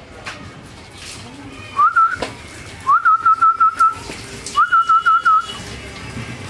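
A person whistling loudly in three short phrases. Each phrase glides up and then warbles at one pitch.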